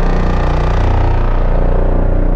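Logo sting sound design: a loud, steady deep bass drone with sustained tones layered over it.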